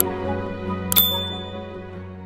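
Subscribe-button animation sound effects: a mouse click at the start, then another click with a short bell ding about a second in. Soft background music fades out underneath.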